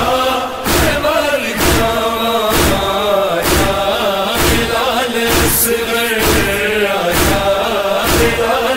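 Male voices chanting a noha refrain, a drawn-out lament melody, over a steady beat of sharp thumps about once a second, the rhythm of chest-beating (matam).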